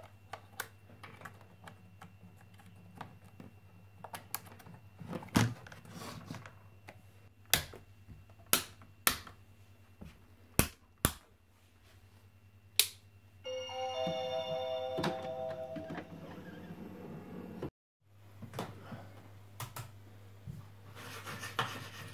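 Clicks and knocks of things being handled on a desk, as a magnetic charger plug is fitted to a laptop and the phone camera is moved and set down, over a low steady hum. About two-thirds of the way through comes a brief chime of several held tones.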